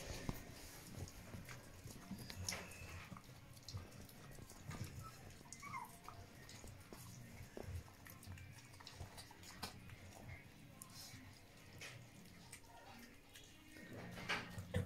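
Puppies lapping and smacking at wet mushy food in stainless steel bowls: faint, scattered wet licks and small clicks, with a brief rising squeak from a puppy about midway.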